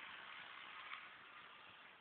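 Near silence: a faint, even hiss with one light click about a second in.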